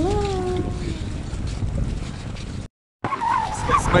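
A little girl's voice singing a last drawn-out "la" that dips and then rises in pitch, fading out within the first second, over a steady rumble of wind on the microphone. The sound cuts out completely for a moment about three seconds in, then a man starts speaking.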